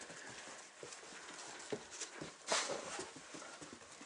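A Weimaraner puppy's paws making scattered light taps and scuffs as it moves about close by, with a brief rush of rustling noise about two and a half seconds in.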